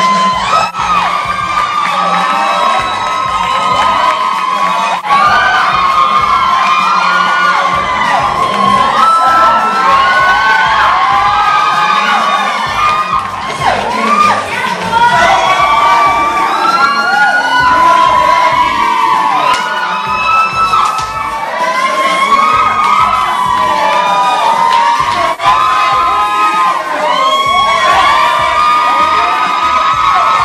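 Crowd of young women screaming and cheering, many high voices overlapping throughout.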